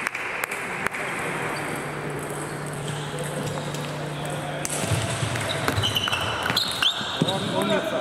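Table tennis ball clicking off the bats and table in a short rally about five to seven seconds in, with short high squeaks from shoes on the hall floor, followed by a voice calling out.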